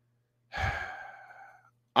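A man sighing: one long breathy exhale that starts about half a second in and fades away.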